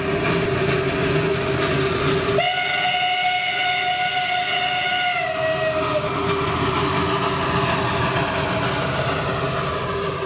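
Steam train running with a steady rumble. About two and a half seconds in, its whistle sounds one long blast of roughly three seconds, sagging a little in pitch as it fades.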